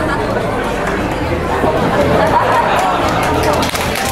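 Crowd chatter: many people talking at once in a banquet hall, with no single voice standing out.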